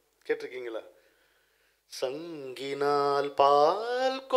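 A man's voice says a short phrase, then about halfway through breaks into unaccompanied singing: long held notes that glide and bend, rising in pitch near the end.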